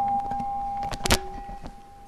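The end of a plucked-string music intro: one held note rings and fades away, with a couple of soft plucks about a second in.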